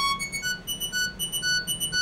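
MDA DX10 software FM synthesizer playing a repeating pattern of short, high pitched notes, about two a second, while its waveform control is being adjusted.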